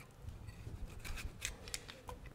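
A ripe tomato being cut into pieces by hand over a pressure cooker: a few faint, crisp snips and clicks.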